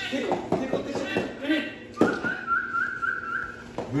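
A steady whistle, wavering slightly, held for nearly two seconds, starting right after a sharp knock about halfway through. Short voice-like sounds come before it.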